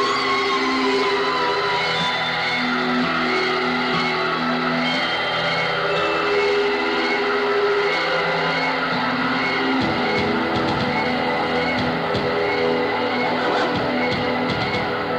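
Live electronic band music: held keyboard notes change about once a second under high, wavering, sliding tones. A run of short percussive hits comes in about ten seconds in.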